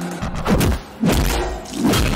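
Heavy film fight-scene hit sound effects: a few loud thuds of blows landing, over background music.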